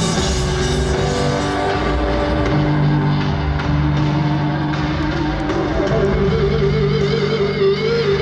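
Live rock band playing an instrumental passage through a festival PA, heard from the crowd. The drums stop about two seconds in, leaving long held low notes under a wavering guitar line.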